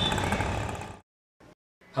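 Auto-rickshaw engine running with street noise, a steady low rumble that fades out about a second in, followed by near-total silence.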